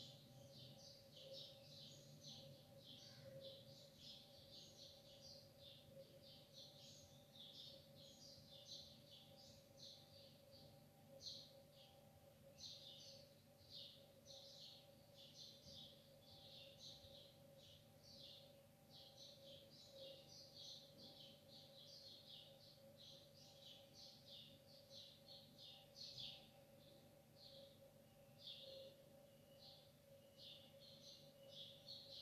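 Near silence: faint, continuous high-pitched chirping, several chirps a second, over a steady low hum.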